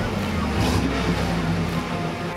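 Chevrolet Impala SS's 5.7-litre LT1 V8 running steadily at low revs, with music playing over it.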